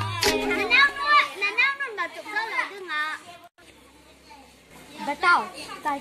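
Children's high voices talking and calling out during play, dropping away for about a second past the middle and then starting again.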